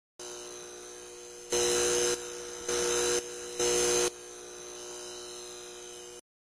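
Neon sign sound effect: a steady electrical buzz with three louder buzzing surges about a second apart, as the neon lettering flickers. The buzz then cuts off abruptly.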